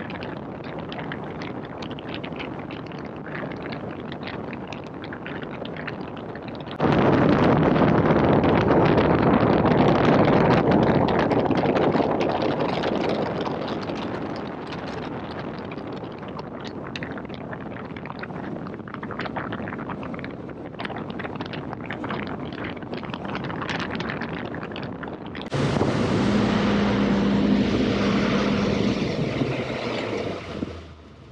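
Mercury Optimax outboard running a boat at speed, heard under heavy wind buffeting on the microphone and rushing water. The loudness jumps up suddenly about a quarter of the way in, eases off, and jumps again near the end, where a steady engine hum shows through the wind.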